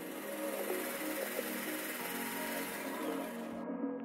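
Redmond JHB 218 hand blender's motor running with the milk frother attached, a steady even whir that cuts off about three and a half seconds in, over background music.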